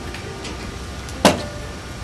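A boxed water purifier being taken off a low store shelf: one sharp knock a little over a second in, over a steady low room hum.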